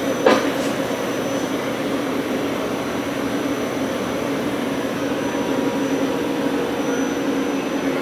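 A steady mechanical hum with a low, constant drone, and a small click just after the start.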